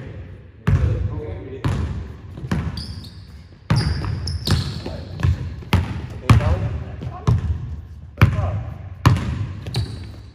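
Basketball dribbled on a hardwood gym floor, about one bounce a second, each bounce echoing around the hall. A few brief high sneaker squeaks come near the middle.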